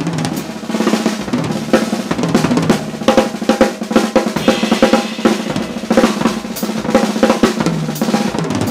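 Drum kit played fast and busily: rapid snare strokes and rolls, bass drum and K Zildjian cymbals in quick fusion-style patterns, with steady low notes from another instrument underneath.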